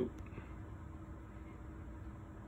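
Quiet room tone: a faint, steady hum and hiss with no distinct sounds.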